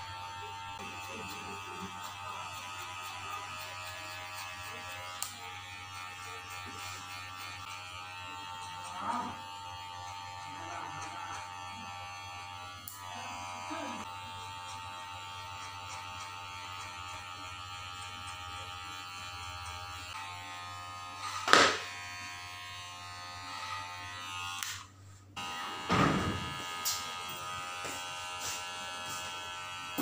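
Cordless hair clipper running with a steady buzz as it tapers the hair at the nape of the neck. A sharp knock sounds about two-thirds of the way through, then the sound drops out briefly before the clipper carries on.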